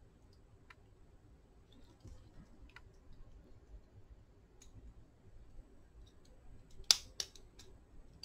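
Hands handling a small plastic switch part and its wires from a disassembled cordless drill: faint ticks, then two sharp clicks about seven seconds in, the first the loudest.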